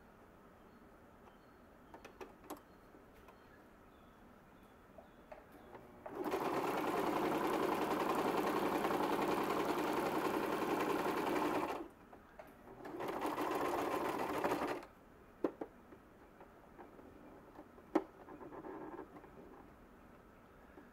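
Electric domestic sewing machine stitching through waxed cotton duck canvas: after a few quiet seconds it runs steadily for about six seconds, stops, then runs again for about two seconds. A few sharp clicks follow near the end.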